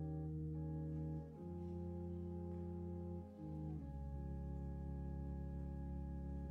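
Slow instrumental music on a keyboard: sustained chords held steady, moving to a new chord about a second in and again midway.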